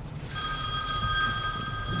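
A steady electronic ringing tone made of several pitches at once, starting about a third of a second in and holding at an even level without fading.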